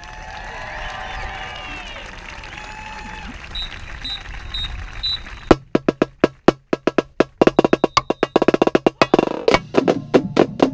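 Marching snare drums starting to play: after a few seconds of voices and four short, evenly spaced high beeps, sharp stick strikes come in at about five and a half seconds and go on in a fast, loud rhythm.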